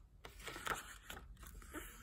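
Faint rustling and small clicks of a picture book's paper pages being turned by hand.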